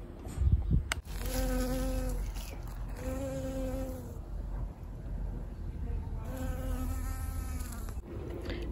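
A bee buzzing in flight, its wing hum coming and going three times, each spell about a second long.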